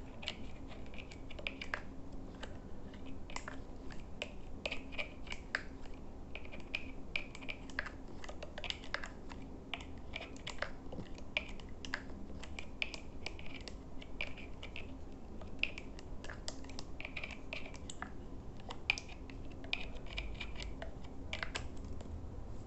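Rapid, irregular soft clicks and taps close to the microphone, several a second, from fingertips and nails tapping at the camera: an ASMR trigger.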